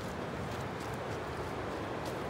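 Steady rush of a waterfall and river ahead, with light footsteps crunching on a leaf-covered dirt trail.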